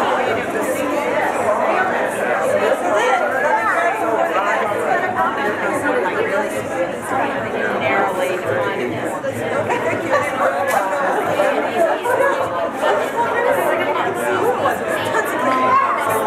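Crowd chatter: many people talking at once, a steady babble of overlapping conversations with no single voice standing out.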